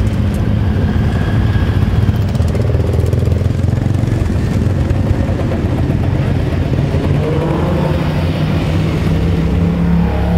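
A procession of motorcycles and quad bikes riding slowly past close by, their engines running with revs that rise and fall as each one pulls away.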